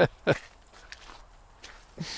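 A short laugh, then a few faint, scattered footstep clicks as people walk across a car park.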